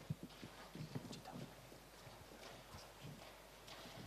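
Faint, irregular footsteps of hard shoes on a stage floor, as a person walks across it.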